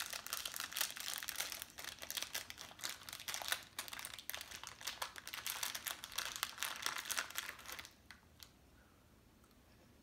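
Plastic Sour Patch Kids candy bag crinkling as it is handled and rummaged through, the rustling stopping about eight seconds in.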